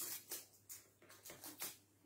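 Faint, irregular scratching and ticking of a fingernail picking at the stuck end of a roll of sellotape that won't come off.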